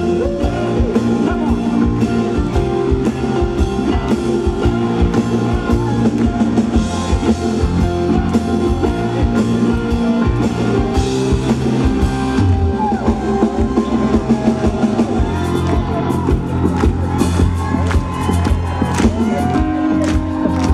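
A live rock band playing at full volume: drum kit, electric guitar and keyboards, with singing over the top.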